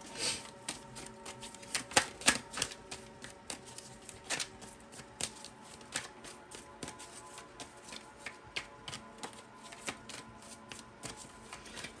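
A Mystical Cats Tarot deck being shuffled by hand: a long, irregular run of quick card clicks and snaps.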